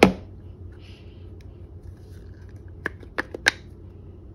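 A measuring cup being tapped against a plastic mixing bowl to shake out the last of the applesauce: a sharp knock at the start, then four quick taps about three seconds in, over a low steady hum.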